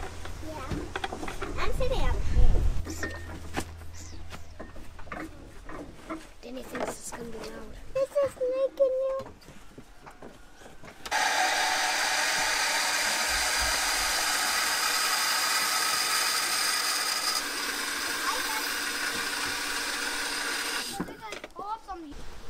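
Electric surface jet pump with a pressure tank, on a test run to see that it works and builds pressure: after some clanking of fittings, the pump starts about halfway through, runs with a steady whine for about ten seconds and then stops suddenly.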